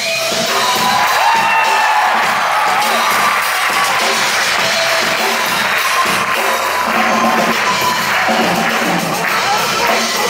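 Live band music on stage, with piano and drums in the band, under a theatre audience cheering and whooping.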